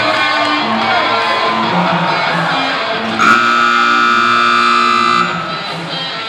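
Guitar-driven music over the arena sound system, cut through about three seconds in by a loud, steady horn blast lasting about two seconds that stops abruptly. The blast is the kind of arena horn that signals the end of a bull ride.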